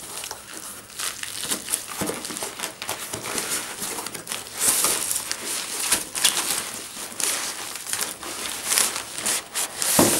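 Cardboard box and bubble-wrap packaging handled by hand: irregular crinkling, rustling and scraping with many short crackles as the box is opened and its contents pulled out.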